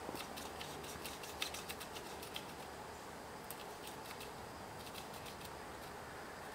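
Razor blade slicing the excess off a rubber tire plug flush with the tread, the plug held with pliers: light clicks and scrapes, mostly in the first two and a half seconds, over a faint steady hiss.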